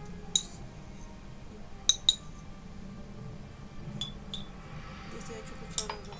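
A glass jar being handled clinks six times with short, bright rings, loudest as a quick pair about two seconds in.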